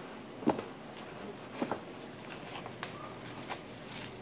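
Handling noise of a cardboard smartphone box being slid out of its sleeve and opened, with a few short soft knocks and scrapes of cardboard and plastic wrap.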